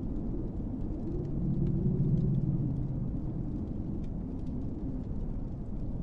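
A low, steady rumble that swells for about two seconds from about a second and a half in, with faint scattered ticks above it.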